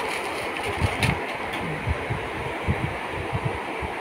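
Clear plastic wrapping crinkling and rustling as a packaged item is handled and unwrapped, with irregular soft low bumps and a few sharp clicks from the handling.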